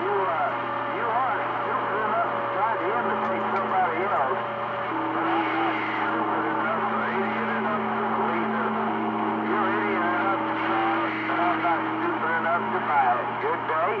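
CB radio receiver on channel 28 picking up several distant stations talking over one another, the voices garbled and unintelligible through static. Steady whistling tones come and go for several seconds at a time under the chatter, over a constant low hum.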